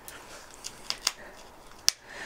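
Messerfieber Bushcraft Tanto folding knife cutting a notch into a stick of old, dried-out hazel: a few short, crisp cuts as the blade bites into the hard wood, the loudest near the end.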